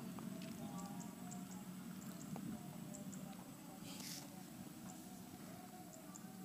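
Faint handling noises as a soft plastic hose is pushed onto the outlet of a small water-dispenser pump: light clicks and rubbing, with one brief rustle about four seconds in.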